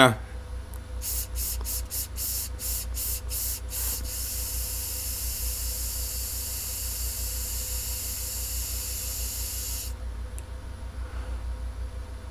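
A vape pen being drawn on. There are a few short hissing puffs, then one long steady hiss of about six seconds that stops suddenly, over a low steady hum.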